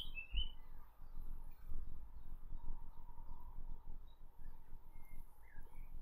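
Scattered short bird chirps, a couple near the start and a few faint ones later, over steady low outdoor background noise.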